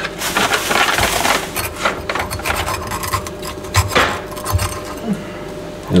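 A kitchen knife cutting and scraping through red bell peppers on a bamboo cutting board: a stretch of scraping in the first second and a half, then scattered knocks of the blade on the wood, the sharpest about four seconds in.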